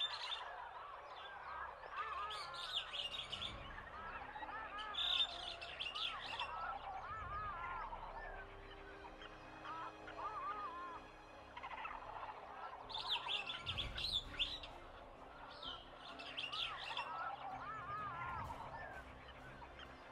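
Jungle soundscape of many birds calling and chirping at once, with louder clusters of high chirps every few seconds.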